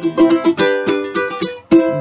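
Ukulele strummed in a quick steady rhythm, its chords ringing out with no voice over them. Near the end the strumming drops away briefly before one strong strum.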